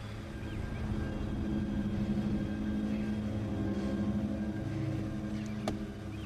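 Car engine running steadily, with a single sharp click a little before the end.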